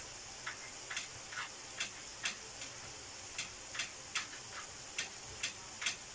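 Shrimp and vegetables in a thick sauce simmering in a frying pan: bubbles popping in sharp little clicks, two or three a second, over a faint steady hiss.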